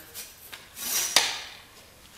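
Handling noise of a metal mic stand tube being moved and set into a chop saw: a few light clicks, a brief scrape, then one sharp clack about a second in. The saw is not running.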